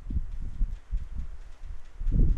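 Stylus writing on a tablet: a string of soft, low, irregular thuds as the pen strokes and lifts.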